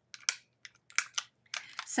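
Clear photopolymer stamps being peeled by hand off their plastic carrier sheet: a quick string of short, sharp clicks, about half a dozen in under two seconds.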